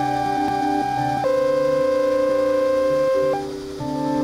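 Ambient electronic music: held, pure-sounding synthesizer tones over a steady low drone, the lead tone stepping down to a lower pair of notes about a second in and breaking briefly near the end.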